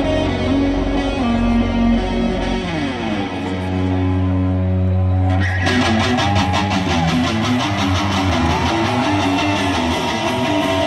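Live rock band playing loud through a concert PA: guitar notes ring out over a held bass tone and slide downward. About five and a half seconds in, the full band comes in with drums and distorted electric guitars playing a repeating riff.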